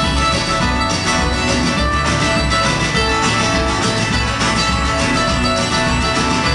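Live band playing an instrumental passage: strummed acoustic guitar and bright plucked mandolin over bass and drums, with a steady beat.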